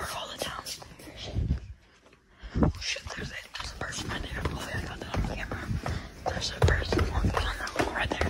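Hushed whispering, with irregular thumps and rustling from a phone camera carried at a walk across a tiled floor.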